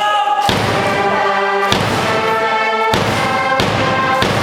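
A university orchestra's wind and brass players playing a slow, march-like Japanese university cheer-song tune, with about four heavy thumps marking the beat.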